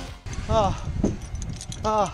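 Metal zip-line harness hardware (carabiners and clips) jangling and clinking repeatedly, with short vocal exclamations about half a second in and again near the end, and a single knock about a second in.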